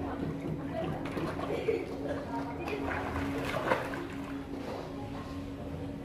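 Swimming-pool water sloshing around a swimmer, with indistinct voices and a steady low hum. There is a brief louder splash-like burst about three and a half seconds in.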